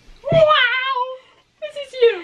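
A young woman's high, drawn-out exclamation, about a second long, its pitch rising and then sliding down. A shorter falling vocal sound follows near the end.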